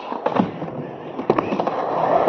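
Skateboard wheels rolling over rough asphalt, a continuous gritty rumble that grows louder as the board approaches, with a few sharp clicks along the way.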